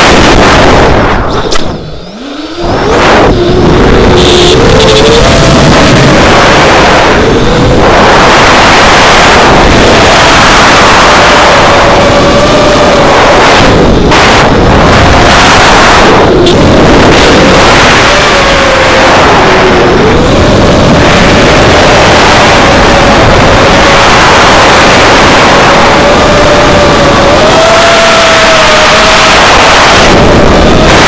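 Four brushless motors and propellers of an FPV racing quadcopter, heard from its onboard camera, with a wavering buzz that rises and falls with throttle over loud wind rush. About two seconds in the throttle is cut: the sound drops away and the pitch falls, then spools back up; the pitch dips again briefly near the twenty-second mark.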